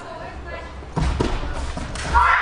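Fencers' feet thudding on the piste as a sabre bout starts, with a sharp knock about a second in and a few lighter ones after it.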